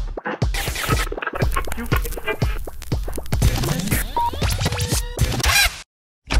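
Closing-credits music with a beat and record scratching, cutting off suddenly near the end.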